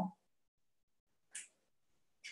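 Near silence, broken once about a second and a half in by a short, faint hiss.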